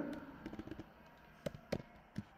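Faint computer keyboard keystrokes, a few soft taps and then two sharper key clicks about a second and a half in.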